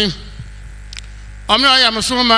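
Steady low electrical mains hum from the microphone and amplification chain, heard plainly in a pause in speech. A faint click comes about halfway through, and a man's amplified voice resumes near the end.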